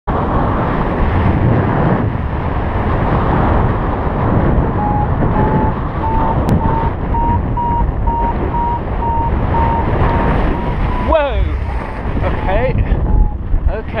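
Heavy wind buffeting on the microphone of a paraglider in flight. From about five seconds in, a variometer beeps in short, steady-pitched tones that creep slowly higher, the sign that the glider is climbing in lift.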